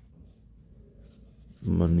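Faint scratching of a pen writing on paper, then a man's voice begins near the end.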